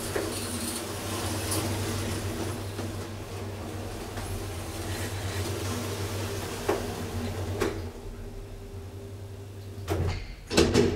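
DEVE up-side-down telescopic hydraulic elevator travelling, its pump motor and hydraulics humming steadily. Two clicks come about seven and eight seconds in, as the car slows and the hum cuts out. Near the end there is a knock, the car arriving at the landing.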